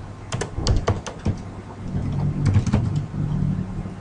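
Computer keyboard typing: a quick run of keystrokes in the first second or so, then a few more about two and a half seconds in.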